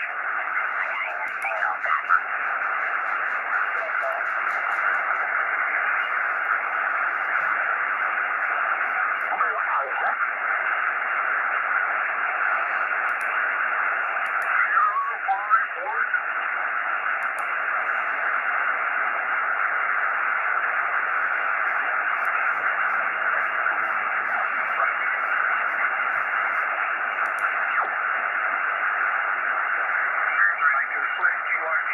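Xiegu X6100 HF transceiver's speaker giving steady band-noise hiss, cut off in the treble by its receive filter, as it is tuned up the 40-metre band in lower sideband. Faint, garbled snatches of single-sideband voices come through about ten and fifteen seconds in.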